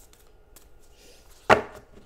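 A card deck is knocked once, sharply, against a hard tabletop about one and a half seconds in. Faint rustles and clicks of cards being handled come before it.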